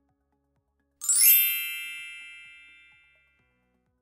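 A single bright chime sound effect strikes about a second in and rings with many high tones, fading away over about two seconds.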